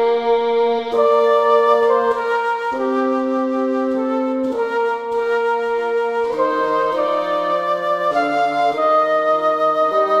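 A trio of flute, violin and bassoon playing classical chamber music in G minor. Several held, overlapping notes change about once a second, and the lowest part moves lower from about six seconds in.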